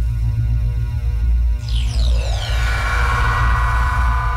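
Channel logo intro sting: electronic music with a deep, steady bass drone and held tones. About halfway through comes a shimmering sweep that falls in pitch.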